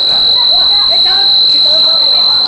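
A referee's whistle blown in one long, steady, high-pitched blast, with faint voices underneath.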